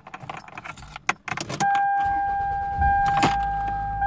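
Ignition keys jangling as the key is turned, then the Toyota's engine cranks and starts about three seconds in and settles into a high cold-start idle, near 1,800 rpm. A steady high-pitched tone sounds from about a second and a half in and carries on.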